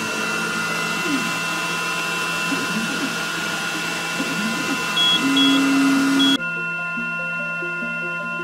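xTool M1 laser engraver running while engraving stainless steel: a steady hissing machine noise with short rising and falling whirs from its motors, over background music. The machine noise cuts off abruptly about six seconds in, and the music carries on.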